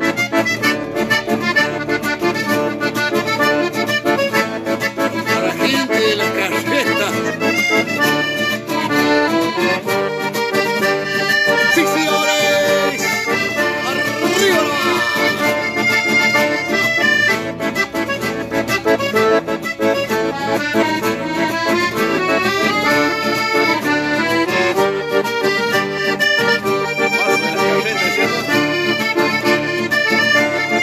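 Chamamé played on an accordion with acoustic guitar accompaniment: a continuous, lively instrumental passage of quickly changing melody notes.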